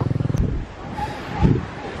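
A small engine running with a steady pulse, cut off abruptly about half a second in. Then quieter open-air ambience with a single low thump near the middle.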